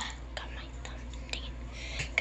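Faint whispered, breathy voice sounds with a couple of small clicks, over a steady low hum.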